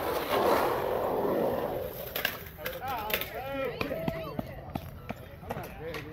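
Skateboard wheels rolling on the concrete bowl for about two seconds, then a few sharp clacks of the board. Voices calling out follow.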